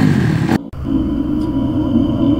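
Steady low engine rumble, broken by a short dropout in the audio about half a second in.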